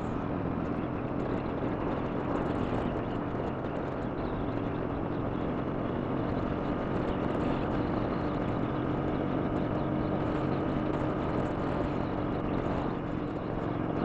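2007 Triumph America's 865cc parallel-twin engine running at a steady cruise, mixed with wind and road noise picked up by a helmet-mounted microphone.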